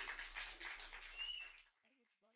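Faint audience noise in a hall, a low mix of murmuring and stirring from the crowd, which cuts off to silence about one and a half seconds in.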